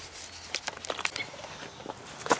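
A scatter of light, irregular clicks and taps over faint background noise.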